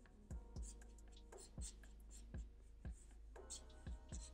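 Black felt-tip marker scratching across paper in a series of about eight short, quick strokes, faint and irregularly spaced, as hairy texture lines are sketched.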